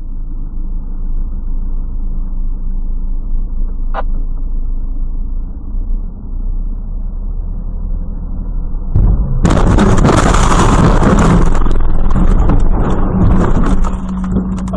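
Steady low road and engine rumble of a car heard from inside, with a single click about four seconds in. About nine seconds in, a sudden, much louder burst of noise starts with a low thud and lasts some four seconds.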